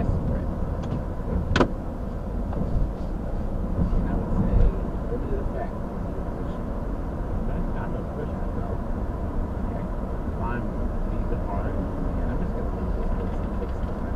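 Steady road and tyre noise inside a moving car's cabin at about 40 mph, with the car gathering speed gently. There is one sharp click about a second and a half in.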